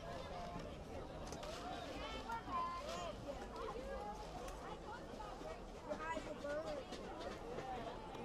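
Faint chatter of several voices talking over one another at a distance, with no single close voice.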